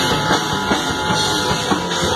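A heavy metal band playing live: electric guitars and drum kit, loud and dense, with a steady drum beat.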